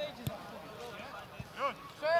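A football being kicked with a sharp thud just after the start, then a player's short shout about one and a half seconds in.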